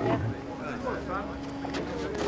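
Faint voices of people talking at a distance over a steady low hum.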